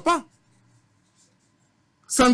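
A man's voice finishing a word, then a pause of nearly a second and a half with only faint room hum, before speech resumes just after the end.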